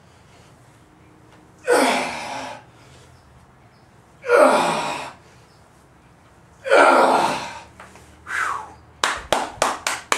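A man's forceful breaths, one long, loud exhalation with a slight voiced edge about every two and a half seconds, in time with each cast of a heavy 80 lb clubbell around his head; a shorter breath follows, then a quick run of short, sharp sounds near the end.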